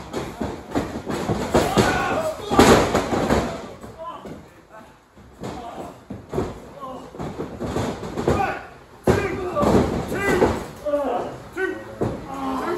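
Bodies hitting a wrestling ring's mat: a heavy slam about two and a half seconds in and another about nine seconds in, with voices and shouting between them.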